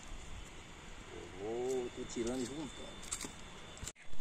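A faint, distant voice speaking briefly over quiet outdoor background, with a few light ticks near the end.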